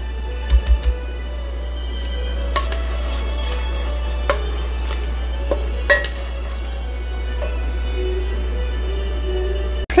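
Chopped onions sizzling steadily as they sauté in fat in an enamelled cast-iron pan, with a wooden spatula scraping and tapping against the pan now and then and a few soft knocks in the first second. Faint background music with held notes plays underneath.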